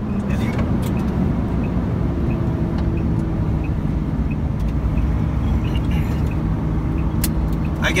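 Diesel truck engine running steadily while under way, heard from inside the cab.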